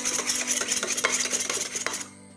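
A spoon whisks raw eggs in a stainless steel bowl, making fast scraping and clinking against the metal. It stops at the end.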